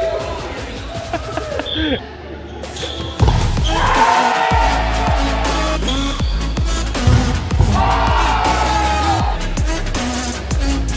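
Gym sounds of a volleyball game, with players' voices and ball hits ringing in the hall. About three seconds in, background music with a heavy bass comes in suddenly and carries the rest.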